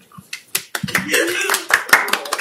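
Audience applause breaking out about a second in, many hands clapping densely, with voices in the room.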